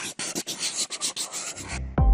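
Scratchy rubbing sound effect of an animated logo intro, a quick run of rasping strokes at about eight a second. It stops shortly before the end as a low swell rises.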